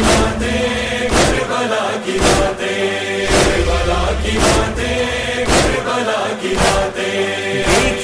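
Interlude of an Urdu devotional song about Karbala: a chorus chants a held, wordless line over a deep beat that falls about once a second.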